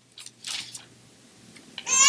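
A couple of short, soft rustles close to the microphone in the first second, most likely pages being handled on the music stand, over a faint low hum; a man's voice starts again right at the end.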